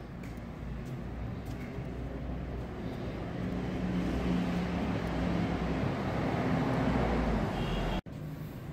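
Road traffic noise with a low engine drone from a passing motor vehicle, growing steadily louder through the second half.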